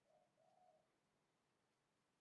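Faint dove cooing: a short coo followed by a longer one within the first second, then only faint room tone.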